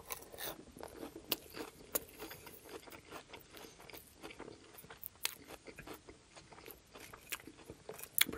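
Close-miked chewing of a mouthful of crisp iceberg-lettuce chicken salad: many short, wet crunches and crackles throughout.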